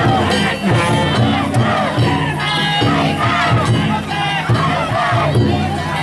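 A large crowd of danjiri festival pullers shouting and calling out together, many voices at once, over a low, regular rhythmic beat.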